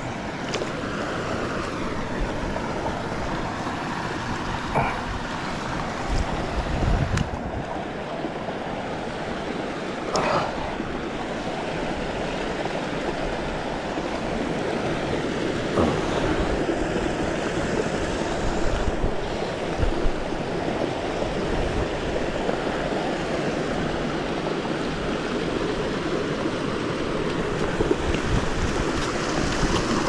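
Steady rush of moving water, with wind on the microphone and a few brief knocks or splashes.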